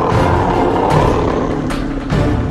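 A growling, snarling creature sound effect, rough and sustained, dubbed over dramatic background music.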